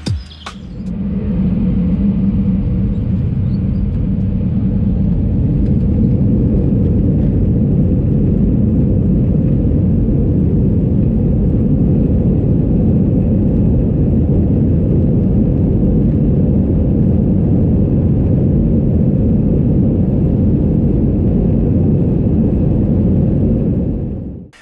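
Airbus A320 takeoff roll heard from inside the cabin: the engines swell to takeoff thrust about a second in, then a loud, steady, deep rumble of engines and runway as the airliner accelerates.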